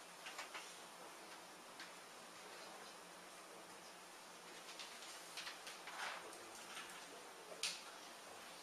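Faint marker-on-whiteboard writing: scattered short taps and scratches of the pen tip on the board, busiest in the second half, with the sharpest tap near the end.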